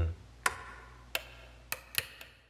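A handful of sharp, irregularly spaced clicks from a metal toggle clamp being worked on a tabletop, two of them close together near the end.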